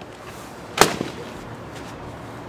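A latex balloon bursting with a single sharp bang about a second in, followed straight after by a smaller crack.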